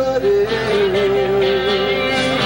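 A live band plays with acoustic and electric guitars. A long wavering note is held for about a second and a half over the strummed chords.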